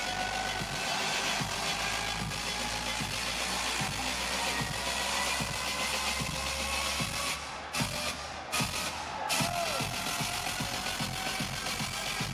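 Dubstep DJ set playing loud: a synth tone rises slowly in pitch over a steady beat, with a few brief cuts in the sound around eight to nine seconds in.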